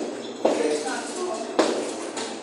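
Background chatter of children's voices in a room, broken by two sharp smacks about a second apart.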